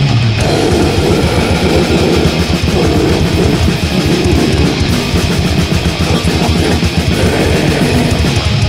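Grindcore/crust band recording: distorted electric guitar, bass and rapid drumming, played loud and unbroken.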